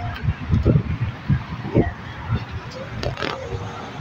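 Indistinct, muffled voices with irregular low rumbling on the phone's microphone.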